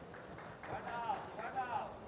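A man's voice shouting from a distance in a reverberant arena, two calls about a second in, over faint background noise.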